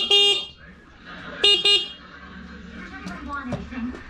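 Vehicle horn tooting in two quick double beeps, the second pair about a second and a half after the first.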